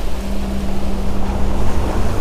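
Wind on the microphone and water rushing past the hull of a sailing yacht making about eight knots, with a steady low hum running under it.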